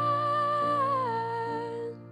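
A young woman's voice holds a long wordless sung note, hummed or on an open vowel, over sustained piano chords. About a second in the note slides down to a lower pitch, is held, and stops just before the end.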